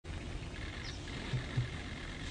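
Male greater sage-grouse in its strutting display, giving two short low coos about a second apart as it inflates its throat air sacs, over a steady background hiss. A faint high bird chirp comes just before the coos.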